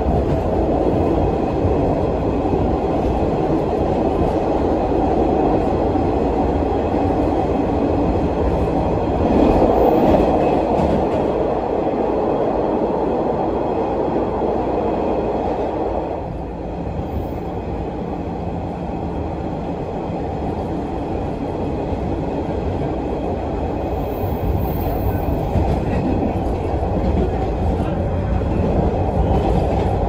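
Interior running noise of an MBTA Orange Line Hawker Siddeley 01200-series subway car under way: steady wheel-on-rail and car noise, swelling louder about a third of the way in and easing slightly just past halfway.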